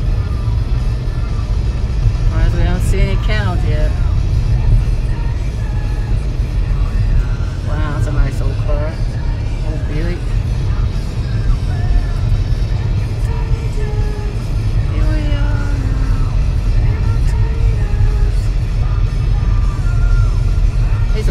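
Steady low road and engine rumble inside a moving car's cabin. Over it, music with a voice carrying a tune comes in short phrases, with some long held notes.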